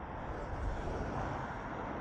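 Road traffic passing close by on a wet road: a steady hiss of tyres and engine noise that swells slightly in the first half second.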